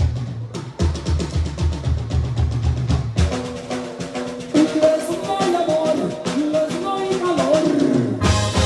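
Live band music through stage speakers: a drum-and-bass beat for about the first three seconds, then held chords and a gliding melody come in over it.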